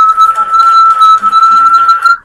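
A whistle blown in one long, steady note.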